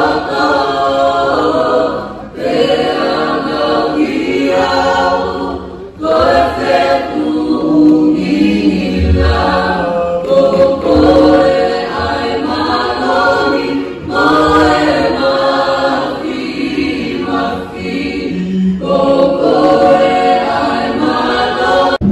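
Polynesian group choir singing together in harmony without instruments, in phrases of a few seconds broken by short pauses for breath.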